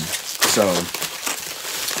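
Bubble wrap and plastic packaging crinkling and crackling as it is handled and pulled open.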